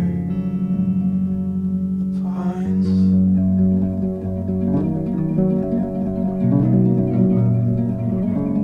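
Folk song in an instrumental passage: plucked guitar over steady low notes, with no sung words.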